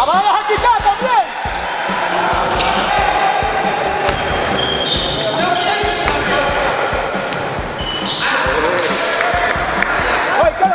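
Live basketball play on an indoor court: the ball bouncing on the floor as it is dribbled, and sneakers squeaking in short rising-and-falling chirps near the start and again near the end. Indistinct players' voices are heard throughout.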